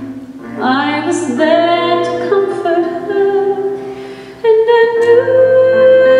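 Female soloist singing long held notes through a microphone, sliding up into a phrase about half a second in and swelling to a louder sustained note about four and a half seconds in.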